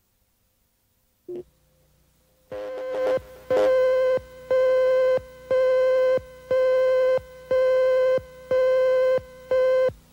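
Countdown leader beeps on a videotape: a buzzy tone at one pitch beeping once a second, in step with the countdown slate, about eight times. A single click comes just before the beeps start.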